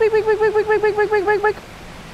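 A man's high-pitched vocal imitation of the light nibbles of the earlier fish: a quick run of short repeated notes, about eight a second, lasting about a second and a half. After that only the steady rush of spillway water remains.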